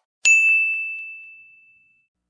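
A single bright bell-like ding, struck once about a quarter second in, that rings on one high tone and fades away over about a second and a half.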